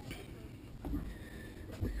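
Faint footsteps and handheld-camera handling noise, a few soft knocks over a low steady rumble.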